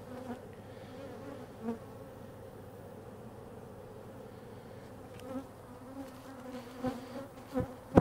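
Honey bees buzzing around open hive boxes in a steady hum. A few soft knocks near the end.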